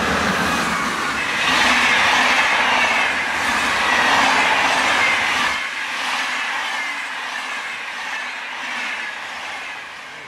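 VR Sr 2 electric locomotive and a long rake of fifteen double-deck passenger coaches passing at speed: a loud rush of wheels on rail, with a high whine sliding downward in pitch. The deepest part of the sound drops away about halfway through and the whole sound eases off toward the end as the coaches go by.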